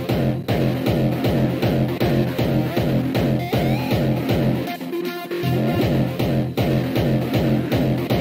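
Hardstyle electronic dance music with a fast, steady, pounding kick drum and heavy bass. About five seconds in, the kick and bass drop out for about half a second, just after a short rising sound, then the beat comes back.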